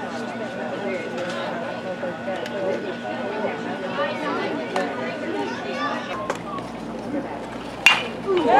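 Many voices chattering at once in a group of players and coaches, with a few small clicks. Just before the end comes one sharp crack of a bat hitting a ball.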